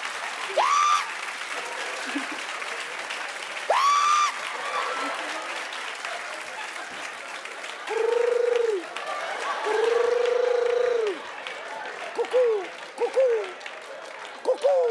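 A cockatoo heard over a video call, calling several times: two sharp rising screeches early on, then two longer, steady calls, then a few short ones near the end. Studio audience applause runs underneath.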